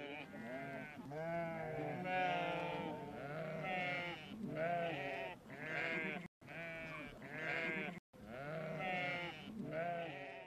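A flock of sheep bleating, many wavering calls overlapping one another, with two brief cuts to silence a little past the middle.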